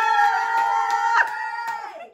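Girls squealing with excitement: a long, high-pitched held scream that drops in loudness just past a second in and trails off near the end.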